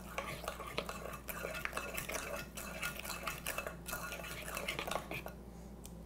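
Metal spoon stirring and scraping thick brownie batter in a stoneware mixing bowl, with small clinks of the spoon against the bowl. Quiet and irregular, dying away near the end.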